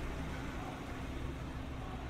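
Steady low rumble of an idling car engine with street background noise.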